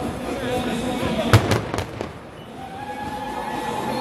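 A quick run of three or four sharp bangs over the noise of a crowd, the first the loudest. Near the end a steady held note sounds.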